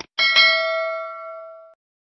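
Notification-bell chime sound effect: a bright, ringing ding struck twice in quick succession and dying away over about a second and a half, just after a short click.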